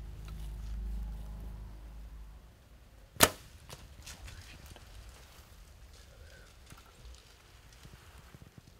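Compound bow being shot: one sharp, loud snap of the string about three seconds in, with a fainter click just after.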